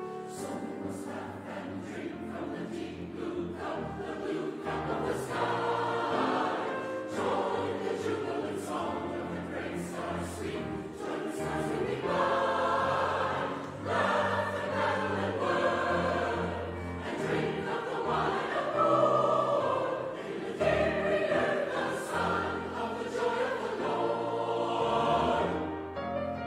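Mixed SATB choir singing a rousing, gospel-flavoured choral setting over piano accompaniment, growing fuller about halfway through.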